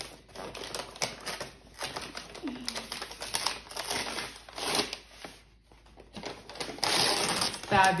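Paper wrapping on a gift box crackling, rustling and tearing as it is unwrapped by hand, in irregular crinkly bursts with a short lull after about five and a half seconds and louder tearing near the end.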